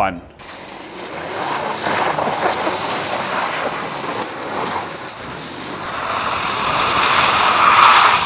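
Ford Explorer ST's tyres sliding and spinning through snow and slush, a rushing hiss of tyre noise and thrown snow and water that grows louder near the end.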